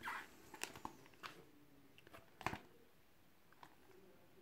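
Faint rustling and a few soft taps as a paper sticker album with plastic sleeve pages is handled and turned over in the hands, with one sharper tap about two and a half seconds in.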